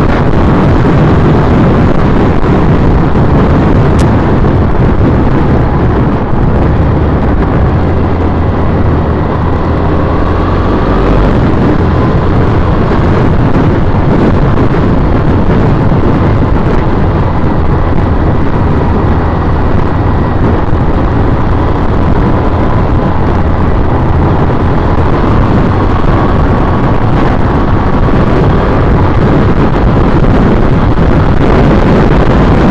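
Wind noise on the microphone of a camera mounted on a moving 2010 Triumph Bonneville T100, over the bike's 865 cc air-cooled parallel-twin engine running at cruising speed. A loud, steady rumble with no change through the ride.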